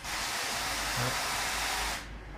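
A steady, even hiss that cuts in and cuts out abruptly, with no change in between.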